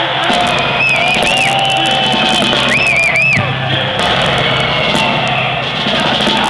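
Live black metal band playing at full volume through stage amplifiers, a dense wall of distorted sound over a steady low hum, with a crowd shouting. Two brief high wavering squeals cut through, about a second in and about three seconds in.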